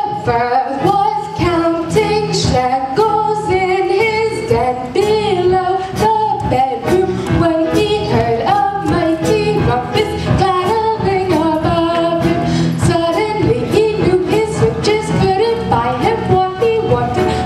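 Stage musical cast and chorus singing a show tune over a band accompaniment with a steady beat.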